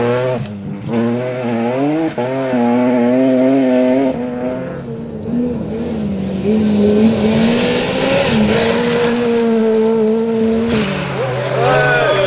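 Rally car engines at full throttle on gravel stages. The revs change sharply in the first two seconds, then hold high and steady. The note dips about five seconds in, holds a second long high-revving run, and a different car's engine takes over near the end.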